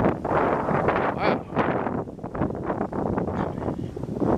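Wind blowing across the microphone, a rushing noise that rises and falls in gusts.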